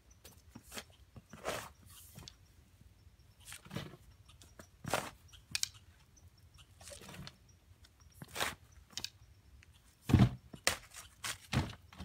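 Long-handled shovel chopping and scraping into soil in a hand-dug hole, a crunch with each irregular stroke about every second, the heaviest strokes near the end.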